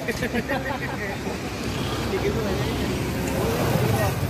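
Street ambience: indistinct voices over a steady wash of road traffic, with a low rumble that grows toward the end.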